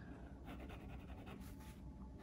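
Faint scratching of a Tombow MONO fineliner drawing pen on cold-press watercolour paper, drawing short shading strokes.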